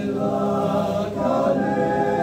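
Male choir singing a cappella in harmony, holding sustained chords, with a brief break about a second in before the next chord.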